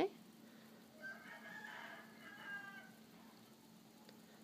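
A faint distant animal call: one drawn-out pitched cry about two seconds long, starting about a second in, over a steady low hum.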